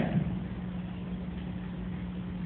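Room tone: a steady low hum with a faint hiss underneath.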